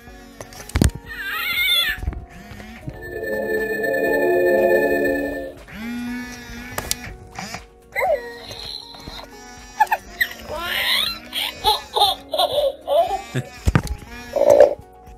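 Galactic Snackin' Grogu animatronic toy playing its baby-creature sound effects through its speaker, reacting to having its head stroked: a string of short cooing and giggling calls, with a long, loud tummy growl in the middle.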